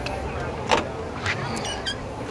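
Driver's door of a 1960 Rambler American Custom being opened: a sharp click of the door latch about a third of the way in, then a short squeak from the door near the end.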